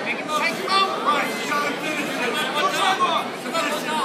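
Chatter of many spectators' voices overlapping in a large indoor hall, with no single voice standing out.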